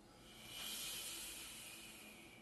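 A person's long hissing breath out through the mouth, the forced Pilates exhalation made while curling up and pressing a Pilates ring. It swells about half a second in and fades away slowly.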